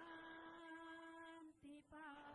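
Faint devotional singing: one voice holds a long steady note, stops briefly about a second and a half in, then slides into the next note.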